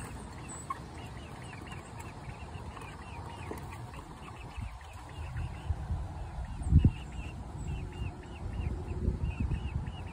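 Chickens making soft, repeated calls throughout, with wind rumbling on the microphone from about halfway, loudest in a gust near seven seconds in.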